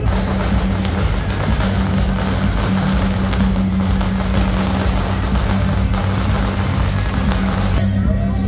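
Beiguan processional band playing, its gongs and cymbals clashing in a dense, continuous wash over one steady held low note.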